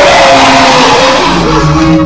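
Recreated Godzilla-style monster roar: a loud, harsh, noisy cry that slowly falls in pitch and fades in the second half as synthesizer music comes in.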